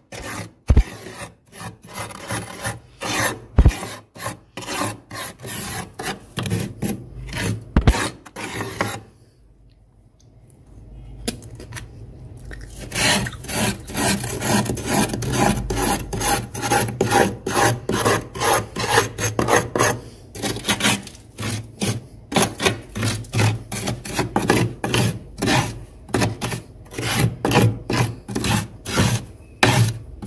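Metal utensil scraping flaky frost off the inside of a freezer in quick, repeated strokes. A lull of a few seconds comes about a third of the way in.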